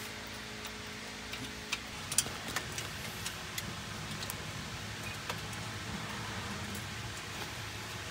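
Light scattered clicks and taps of cables, connectors and a hand tool being handled while wiring an electric golf cart's AC drive motor, the most distinct click about two seconds in, over a steady low background noise.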